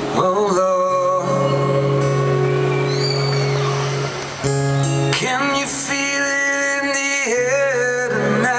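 Live song intro on amplified acoustic guitar through a PA: sustained chords with a wavering melody line above them, and a short drop in level about four seconds in.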